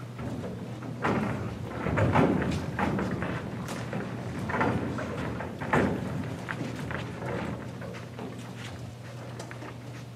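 Irregular thumps and scuffing footsteps of performers moving about on a stage, over a steady low hum.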